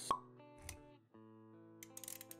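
Intro music of sustained and plucked notes with animation sound effects: a sharp pop just as it starts and a short low thud soon after. The music drops out briefly about a second in, then resumes with small clicks near the end.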